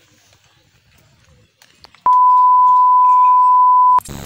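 A loud, steady single-pitch electronic beep near 1 kHz, like a test tone or censor bleep added in editing, starts about halfway through and holds unchanged to the end. Before it there is only faint background.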